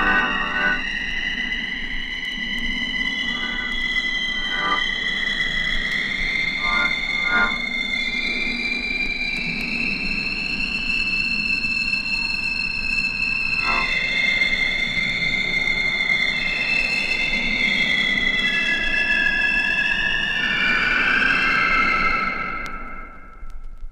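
Abstract electronic library music: several held synthesizer tones that slide slowly up and down in pitch over a low hum, with a few brief pulsing flickers.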